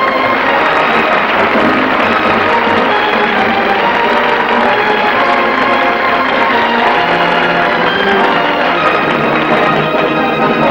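A 1959 sitcom's closing theme music playing steadily and without a break.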